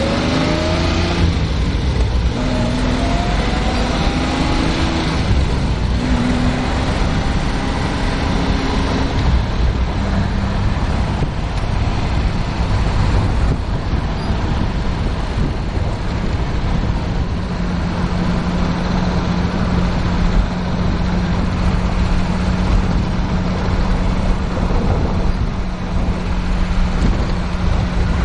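Jaguar E-Type Series 3 V12 engine heard from the open cockpit while driving. Its note climbs in pitch several times over the first ten seconds as the car accelerates, then settles to a steady cruising drone, under constant wind and road noise.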